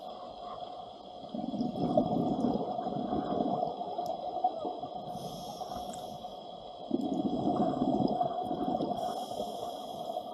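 Scuba diver breathing through a regulator, heard underwater. Two gushes of exhaled bubbles, each about two seconds long, start about a second and a half in and again about seven seconds in. A short thin hiss of an inhalation comes between them.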